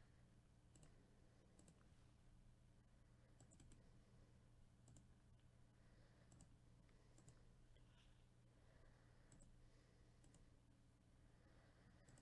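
Near silence with faint computer mouse clicks scattered through it, a dozen or so single clicks, over a low steady hum.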